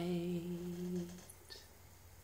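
A man's voice holding the final sung note of the song, steady in pitch, which stops a little over a second in. After it, only faint room tone with a small tick.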